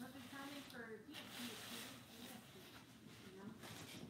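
Faint voice talking, too low and indistinct to make out words, with a soft rustling hiss about a second in and again near the end.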